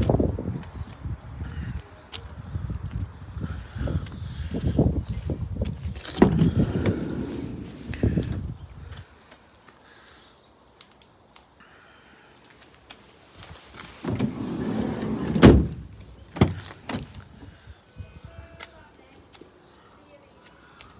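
Doors of a Vauxhall Vivaro panel van being shut and opened. A rear door slams right at the start, followed by several seconds of handling and rumbling. About 15 seconds in, a longer sliding noise ends in a loud bang, followed by a couple of lighter clicks.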